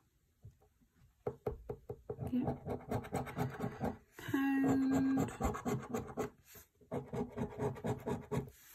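A coin scraping the silver coating off a paper scratch card on a wooden table: a quick run of short scratchy strokes starting about a second in. A brief steady hum of about a second sits in the middle.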